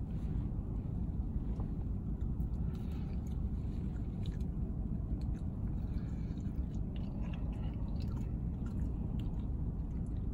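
A man chewing a mouthful of barbecue, with faint, scattered small mouth clicks, over a steady low hum in a car's cabin.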